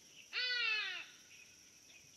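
A single drawn-out cry from a baboon, about two-thirds of a second long, rising briefly and then sliding down in pitch, over a faint steady chirring of insects.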